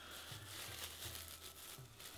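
Cling film crinkling faintly as it is untwisted and peeled off a ball of sushi rice.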